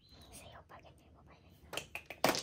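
Mahjong tiles clacking as players handle them, faint at first, with a few sharp clicks near the end.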